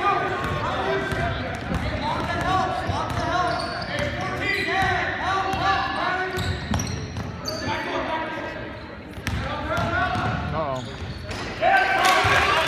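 Basketball game on a hardwood gym court: the ball bouncing and many short squeaks, with voices in the background, all echoing in the large gym.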